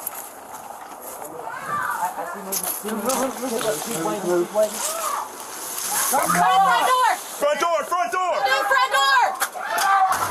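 A woman screaming and crying out for help, high and wavering, growing louder from about six seconds in, with a few knocks and rustles of moving gear.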